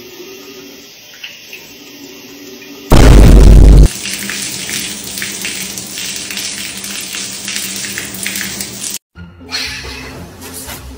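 Tap water running into a bathroom sink under faint background music. About three seconds in comes a very loud, deep boom sound effect lasting about a second, followed by water pouring and splashing onto a tile floor, which stops abruptly near the end.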